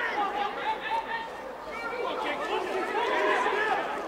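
Overlapping shouts and calls of voices on and around a football pitch during play, with no clear words. The calls are loudest about three seconds in.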